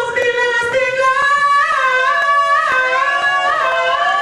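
Human beatboxing into a handheld microphone: a sung, wavering melody held over short mouth-made percussive clicks.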